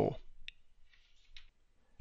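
The end of a spoken word, then near silence broken by two faint, short clicks, about half a second and about one and a half seconds in.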